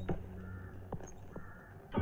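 A few short bird calls over a steady low hum.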